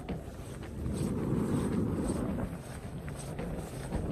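Wind buffeting the microphone: a low, uneven rumble that swells about a second in and eases briefly after two and a half seconds.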